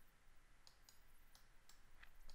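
Near silence with a few faint, sharp computer mouse clicks.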